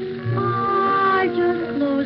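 A 1930s dance orchestra with brass, saxophones and violins plays. A long held melody note with vibrato sounds over sustained chords, breaks off about a second and a quarter in, and a new phrase starts.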